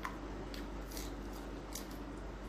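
Crisp crunches of someone chewing raw vegetables close to the microphone, four or so short crunches over a steady low hum.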